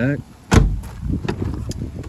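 A door of a 2016 Jeep Wrangler Unlimited gives a loud, solid thud about half a second in, followed by a few lighter clicks and rattles of the door hardware.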